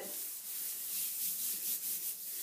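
Hand rubbing over a sheet of white cardstock pressed down on freshly sprayed paper, a steady papery rubbing, blotting the still-wet mist.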